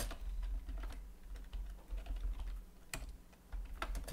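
Typing on a computer keyboard: irregular keystrokes at an uneven pace, over a steady low hum.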